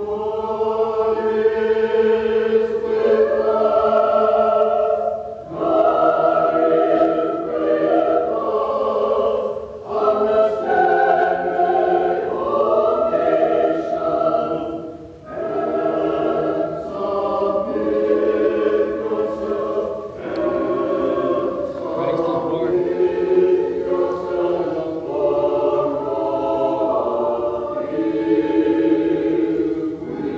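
Russian Orthodox church choir singing a Christmas hymn, in sustained phrases with short breaks about every five seconds.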